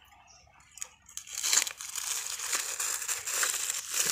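Plastic sheeting crinkling and crackling as a hand pulls it aside, starting about a second in and going on to the end.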